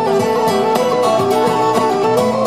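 A low whistle playing a quick, stepping Celtic folk melody over strummed acoustic guitar.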